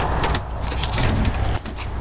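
Loud rustling and scraping noise with no steady tone, typical of a handheld camera rubbing against the hand or clothing while it is carried and swung around.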